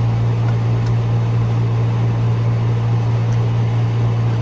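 Air conditioner running: a steady low hum under an even hiss of air noise.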